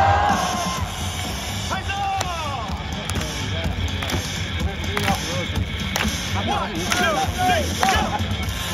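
Cheer music over the stadium sound system with voices shouting along in short calls, a few sharp knocks among them.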